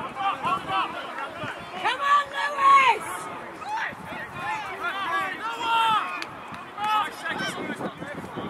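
Shouting voices of rugby players and touchline spectators calling across the pitch, several calls one after another, the loudest a long held shout about two to three seconds in.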